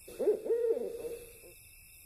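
An owl hooting: a short run of wavering hoots that dies away about a second and a half in.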